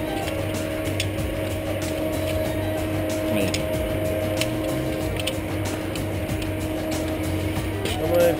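A steady mechanical hum holding two constant tones, with scattered light clicks and metallic jingles on top.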